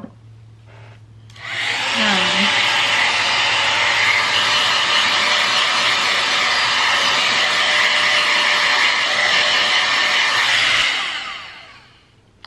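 Dyson Airwrap-dupe hot-air styler blowing with its bare barrel, no attachment fitted: a steady rush of fan air that switches on about a second in and dies away near the end. With no attachment it gives its strongest airflow.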